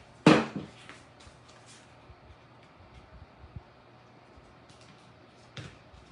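A single sharp knock as a plastic hot glue gun is set down on the craft table, then faint clicks and rustles of thin plastic tile pieces being handled and pressed together, with a smaller knock near the end.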